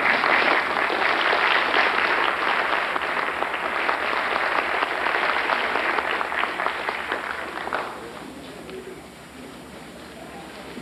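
Audience applauding, loud at first and dying away about eight seconds in.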